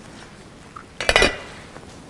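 Communion cups clinking against their tray: a quick cluster of small, sharp clinks about a second in.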